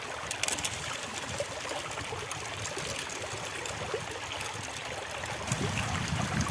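Water running steadily through a gold-prospecting sluice box, streaming over its metal riffles and mat, with a few light clicks about half a second in.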